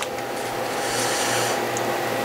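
A steady machine hum with a few faint held tones and a hiss beneath it, unchanging throughout.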